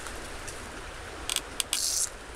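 A herbicide stem-injection tool being worked at the base of a rhododendron stem: a short rasp, a sharp mechanical click, then a brief hiss near the end.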